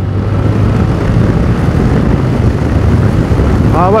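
Yamaha Tracer 7's CP2 689 cc parallel-twin engine running at road speed, a steady low engine note under rushing wind and road noise from the rider's point of view.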